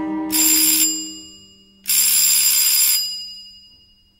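Electric doorbell ringing twice, a short ring and then a longer one of about a second, each dying away, as a sound effect in the film's score. Under the first ring a held string note plays and fades out.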